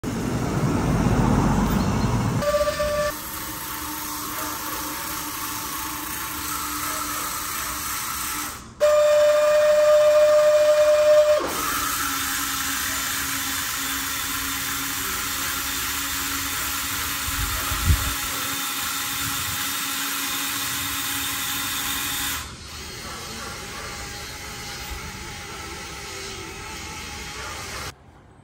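Small electric gear motors of a cardboard model straddle carrier running with a steady whine and hiss. The pitch and level jump at each cut, with a louder, higher whine for a few seconds near the ninth second and a quieter stretch near the end. There is a single light knock in the middle.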